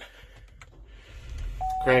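A faint click from the push-button start, then the Buick Encore's 1.4-litre turbo four-cylinder cranks and catches with a low rumble that swells about a second in. A steady single-pitch chime comes on just before the end.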